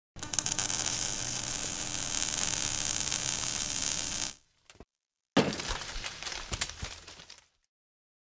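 Logo-reveal sound effect: about four seconds of dense crackling noise, a brief gap, then a sudden hit that fades away over about two seconds.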